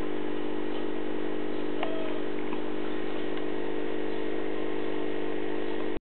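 A steady low hum of several held tones over a faint hiss, with a faint click about two seconds in.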